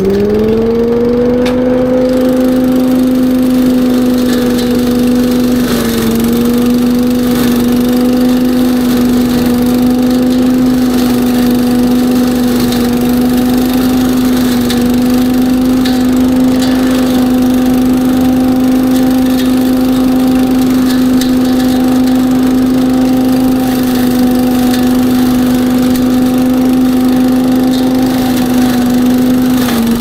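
Billy Goat KV601SP walk-behind leaf vacuum running loud at full throttle, its small engine and impeller climbing to speed in the first second, then holding a steady high hum as it vacuums dry leaves and debris from the gutter. The pitch dips briefly about six seconds in and again near the end.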